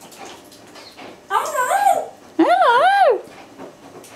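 Congo African grey parrot giving two loud warbling calls, each wavering up and down in pitch, the second just after the first.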